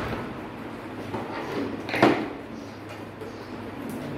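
A single sharp knock about two seconds in, like something hard set down or struck on the wooden workbench, over a steady low hum and faint handling noise.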